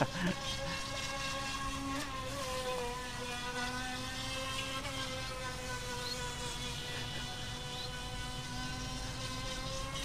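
Feilun FT009 RC speedboat's brushless electric motor running with a steady high whine as the boat speeds across the river, its pitch wobbling slightly now and then.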